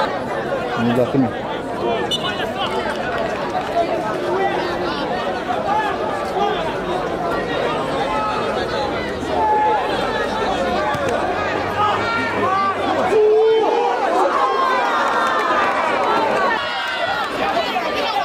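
Football crowd of spectators chattering and calling out, many voices overlapping, with one louder shout about thirteen seconds in.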